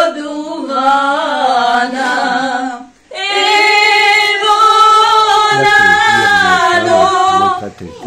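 Women singing unaccompanied, a song of long, wavering held notes, with a short pause for breath about three seconds in.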